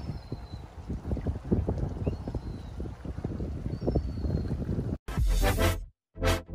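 Wind buffeting the microphone, with a few faint, short falling chirps that sound like a bird. About five seconds in it cuts off abruptly and loud electronic dance music in a dubstep style begins.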